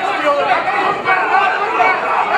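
Crowd chatter: many spectators' voices talking over one another at once, steady throughout.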